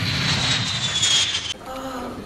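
Jet airliner fly-past sound effect: a rushing jet noise with a high whine that slowly falls in pitch, cutting off suddenly about a second and a half in.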